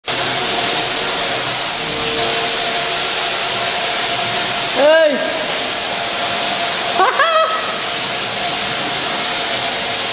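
Wagner paint sprayer running, a steady loud hiss with a faint motor whine under it as it sprays latex paint. A few short pitched calls cut through about halfway and again a couple of seconds later.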